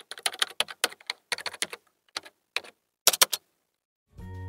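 Computer keyboard typing: quick runs of keystroke clicks with short pauses between them, stopping about three seconds in.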